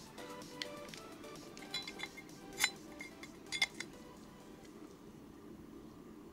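Background music fading out in the first second, then several sharp metallic clinks and taps as a metal pipe is handled, the two loudest about a second apart near the middle.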